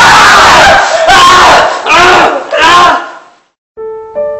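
Four loud, high-pitched screams in quick succession, the last fading out about three seconds in. Quieter piano music begins just before the end.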